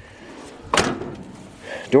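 The steel door of a 1988 Jeep J20 pickup shut once with a solid thud, about three quarters of a second in.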